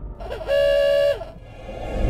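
An intro sound effect: a horn-like pitched tone that slides up, holds steady for about half a second, then drops away.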